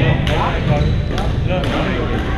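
Badminton rackets striking a shuttlecock, several sharp hits in a row in a reverberant gym hall, over players' voices and court chatter.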